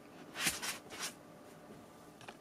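Faint handling sounds from a hand on a soft silicone duck night light: three short, soft rustles within the first second, then near silence.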